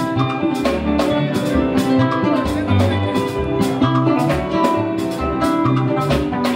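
Live band dance music: high, bright electric guitar lines over bass and a drum kit keeping a quick, steady beat.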